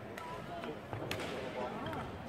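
Badminton rackets hitting the shuttlecock in a rally: two sharp cracks, one just after the start and a louder one about a second in, over spectator chatter.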